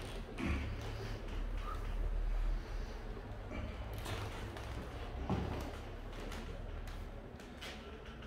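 Two armwrestlers straining against each other at a training table: short strained breaths or grunts about half a second in and again past five seconds, with a few sharp taps and creaks from the table. A low rumble runs under it and eases after about two and a half seconds.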